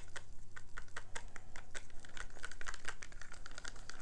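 Wooden craft stick stirring magenta acrylic paint in a plastic cup: a quick, irregular run of small clicks and scrapes as the stick knocks and drags against the cup's walls.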